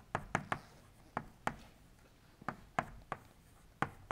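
Chalk writing on a blackboard: about nine sharp, irregularly spaced taps as the chalk strikes the board stroke by stroke.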